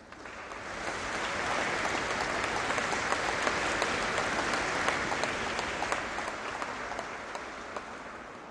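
Audience applauding: a steady wash of many hands clapping that swells over the first two seconds and slowly fades toward the end.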